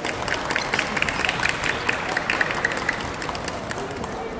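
Audience applauding: many quick, irregular hand claps, starting suddenly and thinning out slightly toward the end.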